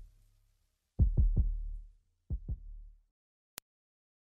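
Closing bars of a hip-hop beat: three quick kick-drum hits about a second in, then two softer ones a second later, each with a deep bass tail that dies away. The track then stops, leaving only a faint click.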